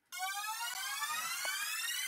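Synthesized rising sweep, a siren-like riser that climbs steadily in pitch as the intro of a hip-hop track.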